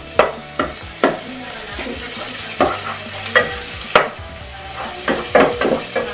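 Onion and garlic sizzling in hot oil in a pot while a wooden spoon stirs them, scraping and knocking against the pot at irregular moments.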